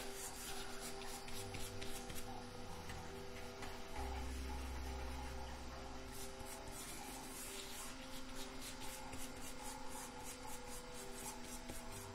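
Stencil brush dabbing and scrubbing acrylic paint through a plastic stencil onto watercolor paper: a faint, steady scratchy brushing.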